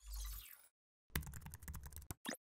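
Keyboard-typing sound effect: a rapid run of key clicks in the second half, after a short swoosh with a low thump at the start.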